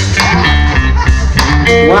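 Live band playing a loud, steady vamp with electric guitar, a heavy low end and short rhythmic strokes.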